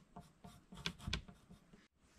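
Faint pencil scratching on a wooden two-by-four: a few short marking strokes.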